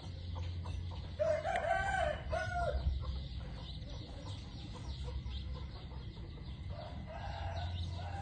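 A rooster crowing, loud and in several linked parts about a second in, with a fainter second call near the end, over a steady low hum.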